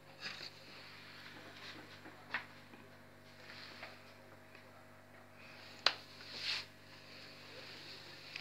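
Faint handling noises: soft rustles and a few light clicks, the sharpest about six seconds in, over a low steady hum.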